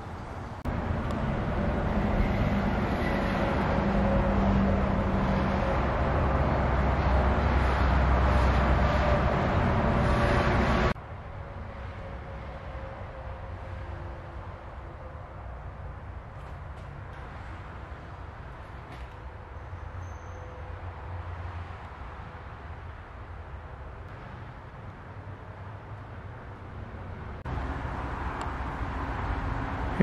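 Low steady rumble of background noise for the first ten seconds or so, cutting off suddenly to a quieter steady room tone, which grows louder again near the end.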